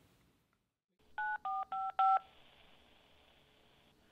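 Four touch-tone telephone keypad beeps in quick succession, each a two-note tone, about a second in, followed by a faint steady phone-line hiss and hum, as a saved voicemail is about to play.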